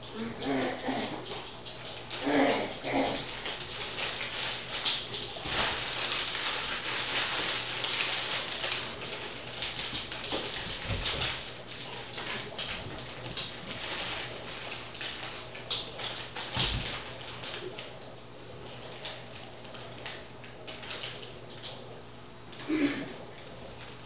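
A plastic cereal bag crinkling and rustling as it is handled for most of the clip, with a dog giving a few short whines near the start.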